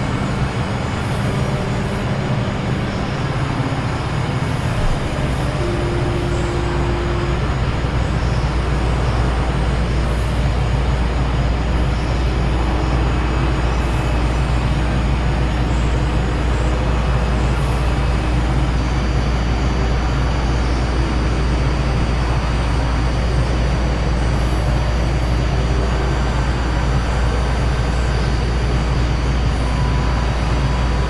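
Experimental synthesizer noise music: a dense, steady wash of noise over low droning tones. A deeper drone swells in about five seconds in, and a couple of short held tones sound above it early on.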